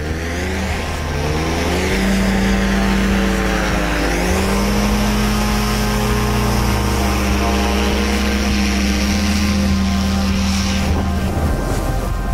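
Paramotor trike's engine and propeller revving up for takeoff, climbing in pitch over the first couple of seconds, then running steadily at full power with a brief dip about four seconds in. A low music bed runs underneath.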